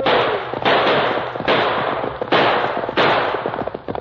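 Five gunshots from an old-time radio drama sound effect, each a sharp crack that trails off, spaced a little under a second apart. The end of a man's falling shout overlaps the first shot.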